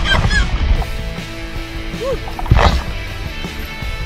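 A man yelling and laughing with excitement on a zip-line ride: a high whooping cry right at the start and another about two and a half seconds in. Background music plays underneath.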